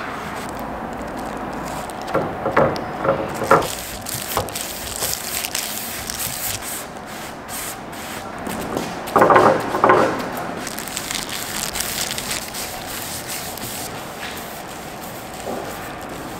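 Handling noises of painting prep and work: a plastic wrapper and disposable plastic gloves rustling and crinkling, and a paintbrush rubbing across wooden boards, with a few louder, irregular scrapes.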